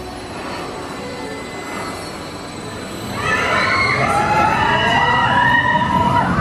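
A family launch coaster train launching toward the camera: about three seconds in the sound jumps to a loud rush of train and track noise, with riders' high, wavering screams over it.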